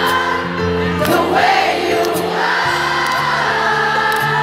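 A live pop band playing in a stadium, heard from within the crowd, with a large crowd of voices singing along. The bass and chords change about two-thirds of the way through.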